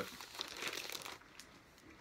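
Paper record sleeve rustling and crinkling as a vinyl LP is handled, dying away after about a second and a half.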